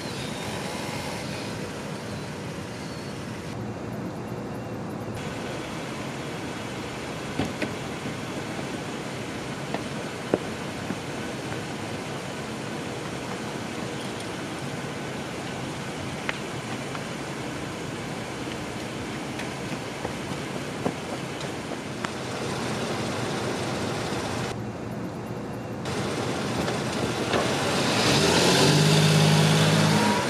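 Car engine running steadily at low revs, with a few faint clicks along the way. A louder, deeper hum with a pitch swells up near the end.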